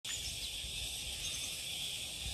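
Steady high-pitched chorus of summer insects, with a couple of faint bird chirps over it.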